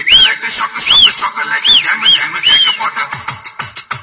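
Upbeat dance music with a steady beat, overlaid by a run of short, high, whistle-like notes that rise and fall, about two a second.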